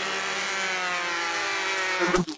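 Cartoon sound effect of an angry bee buzzing as it dives in to sting, a steady buzz whose pitch sinks slightly.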